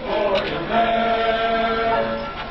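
A congregation singing a hymn together, holding one long note from just under a second in.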